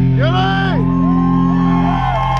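Live rock band's sustained chord ringing on, with a crowd member's whooping shout in the first second and then a long held high note.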